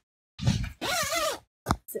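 A brief rustle, then a short wordless sound in a woman's voice whose pitch bends up and down for about half a second.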